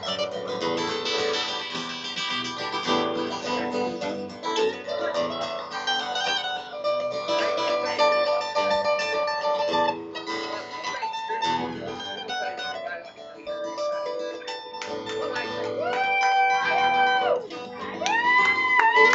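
Two guitars playing an instrumental passage live, one acoustic strumming chords and the other picking lead lines. Near the end a high held note with bends at its start and finish comes in.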